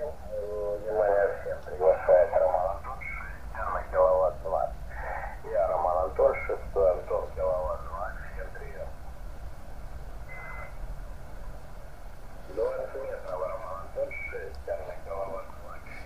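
A distant radio amateur's voice received on single sideband through the small loudspeaker of a Malahit DSP SDR receiver tuned to 14.138 MHz on the 20-metre band, picked up by a home-made magnetic loop antenna. The speech sounds thin and narrow, over a steady low hum, and breaks off for a few seconds in the middle.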